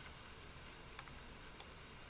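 Two short, sharp clicks at a computer, the louder about a second in and a fainter one half a second later, over faint steady hiss from the call's microphone.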